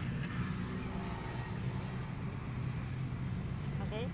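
A steady low hum from a running motor, with a faint click or two near the start.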